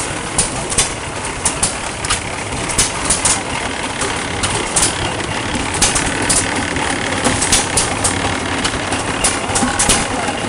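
Antique single-cylinder stationary gas engine running, belt-driving a water pump. Its steady clatter carries sharp ticks and pops at uneven intervals, a few a second, and water from the pump splashes into a steel drum.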